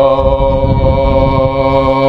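A young man's voice holding one long chanted note at a steady pitch into a microphone, with a low rumble underneath.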